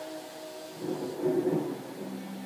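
The last held note of a song fades out, then a short rumble of thunder about a second in, part of the soundtrack's rain scene.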